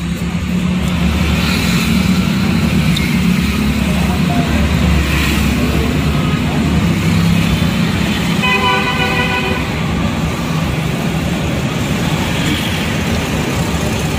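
Steady low hum of a vehicle engine running, with road traffic around it. A horn sounds once for about a second just past the middle.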